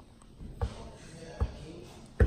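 Two thumps a little under a second apart as a wire pastry blender is pressed down through butter and flour in a mixing bowl, cutting the butter in for pie crust.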